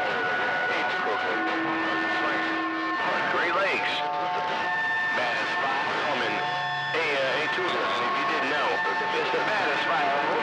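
CB radio receiving 11-metre skip: a jumble of faint, overlapping distant voices in static, with steady heterodyne whistles from carriers that come and go every second or two.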